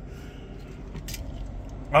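Low steady hum inside the cabin of a 2021 Kia Sorento with its engine idling, and a brief click about a second in.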